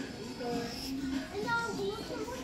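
Several children's voices chattering and overlapping, with no single clear word standing out.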